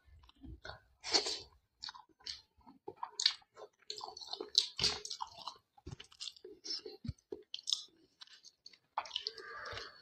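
Close-miked chewing and wet mouth sounds of a person eating rice and chicken curry by hand, coming in irregular short bursts.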